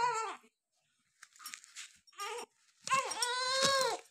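Newborn baby crying: a short cry at the start, a few brief whimpers, then one long cry near the end that rises and falls in pitch.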